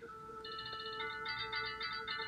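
Phone alarm tone playing, faint: a chiming electronic melody of held notes with a fast pulsing figure on top that grows fuller about a second in.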